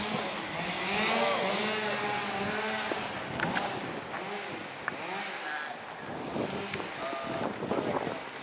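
Indistinct voices of people talking, not clear enough to make out words, over a steady background noise.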